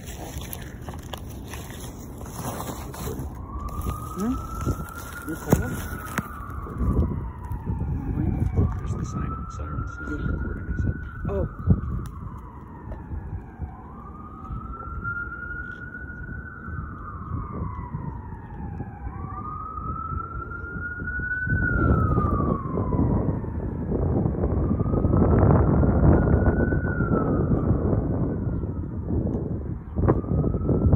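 Emergency vehicle siren in wail mode, beginning a few seconds in and repeatedly rising then sliding down in pitch about every four to five seconds. A low rumbling noise grows louder in the second half.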